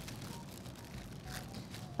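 Faint crinkling of a clear plastic bag as hands press shortcrust pastry dough together inside it, over low room tone.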